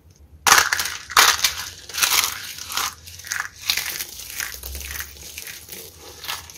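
Hands crushing and scrunching a pile of dry, brittle soap shards: a dense crunching that starts about half a second in and comes in repeated waves, loudest in the first second or so.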